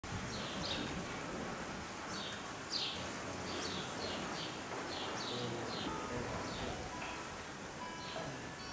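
Small birds chirping repeatedly, each chirp short and falling in pitch, over a steady background noise.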